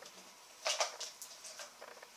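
Small cardboard gift box being handled and picked at with fingernails: a few short scratchy clicks and scrapes, the loudest a little under a second in.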